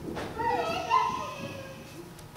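A young child's high-pitched voice calling out, its pitch rising and falling, starting about half a second in and lasting just over a second.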